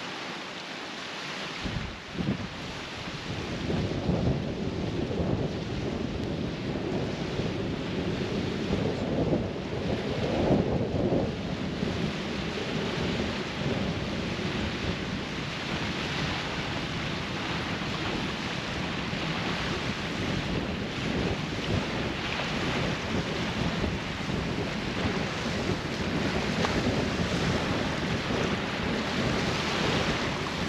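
Strong north wind buffeting the camera microphone in gusts, a rumbling roar that comes up about two seconds in, over the wash of small waves on the shore.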